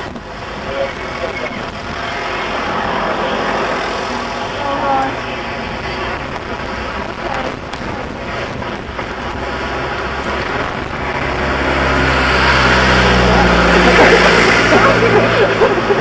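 Bulleid Battle of Britain class light Pacific steam locomotive working a train along the harbour branch at a distance, its low rumble building to its loudest near the end, with wind on the microphone.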